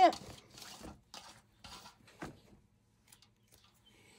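A hand mixing and pressing shredded cabbage slaw in a bowl, working in the sprinkled salt: a few soft rustles over the first two seconds or so.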